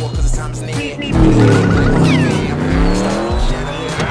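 Car engines revving in a movie chase scene, their pitch rising and falling over music. The sound grows louder about a second in, and a high whistle falls in pitch near the middle.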